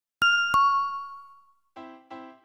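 Two-note chime, a higher ding and then a lower one about a third of a second later, each ringing out and fading over about a second. Near the end a jingle of short repeated chords begins.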